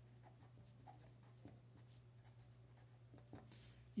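Faint scratching of a black marker pen writing a word on paper, in a few short strokes.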